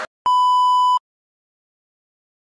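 A single steady electronic beep at one high pitch, lasting under a second, like a video countdown beep.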